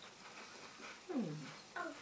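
A person's appreciative "mm" hum while chewing a piece of chocolate, falling in pitch, with a shorter hum just before the end.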